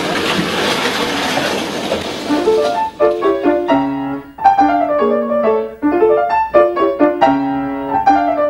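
A loud, even rushing noise for the first two to three seconds, then piano music begins, a steady run of separate notes.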